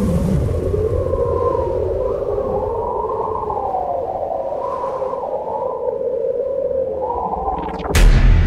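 Eerie ambient film-score drone: a low rumble under wavering, gliding synthesizer tones that sound almost like whale calls. A short rising sweep comes near the end.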